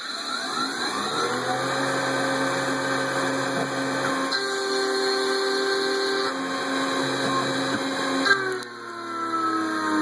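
Tormach 770 CNC spindle starting and spinning a 3/16-inch three-flute carbide endmill up to about 8000 RPM with a rising whine, then running steadily while the cutter side-mills 2024 aluminium. Just past eight seconds in, the pitch drops as the spindle bogs under a cut a little more than half the cutter width, and it begins to recover near the end.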